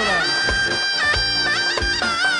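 Live folk-band music: a shrill reed wind instrument holds a high note with quick ornaments over a steady drum beat.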